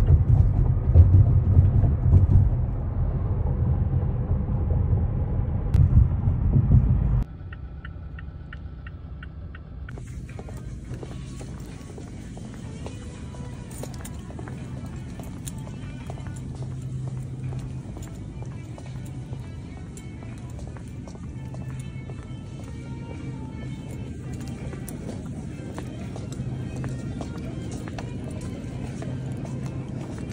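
Road noise inside a moving car, a loud low rumble, which cuts off suddenly about seven seconds in. It gives way to quieter grocery-store ambience: a steady low hum with faint music.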